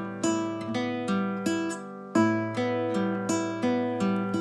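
Nylon-string classical guitar fingerpicked on open strings at a steady pace: a bass string plucked together with the first string, then the second and third strings picked in turn, the pattern repeating and the notes ringing over one another. The joint bass-and-treble plucks stand out, the loudest about two seconds in.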